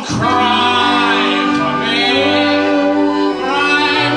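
A live band with saxophone, flute and accordion playing long, wavering melodic notes together, with a brief dip in loudness a little past three seconds.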